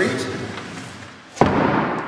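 A heavy thump about one and a half seconds in as a wooden OSB shipping crate is set down flat on a wooden workbench, echoing briefly in a large hangar.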